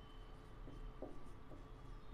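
Marker pen writing on a whiteboard: faint short strokes as a word is written.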